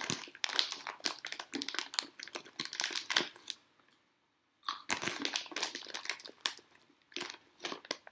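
Dense crinkling and crackling in two spells: about three and a half seconds of it, a pause of about a second, then about three more seconds.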